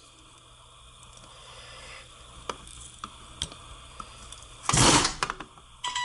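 Hand-handling noise of an electric starter motor being fitted to a Sea-Doo engine case: a few light clicks of metal parts, then a louder half-second scrape about five seconds in, with more small clicks near the end.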